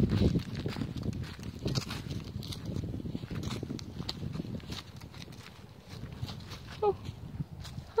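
A horse moving about right beside the microphone: soft hoof steps and scuffs on leaf-covered ground with close rustling, heard as irregular small clicks over a low rumble.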